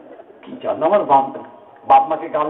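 A man's voice saying a short phrase of about two syllables, between pauses in his talk.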